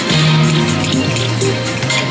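Wheel of Fortune video slot machine playing its electronic game music as the reels spin, with a low held note that steps down in pitch about a second in and quick high clicks and chimes throughout.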